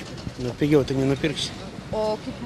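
Speech: a man's voice talking briefly, from about half a second in to about a second and a half, then again at the very end.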